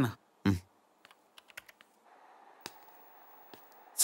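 A brief spoken word, then a few light, irregular clicks of computer keyboard typing about a second in, settling into faint room tone with a couple of soft ticks.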